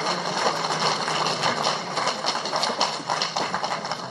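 Audience applauding, a dense run of many hands clapping.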